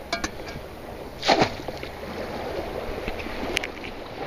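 Shallow water sloshing and splashing as someone wades, with a louder sudden splash about a second in and a few small clicks.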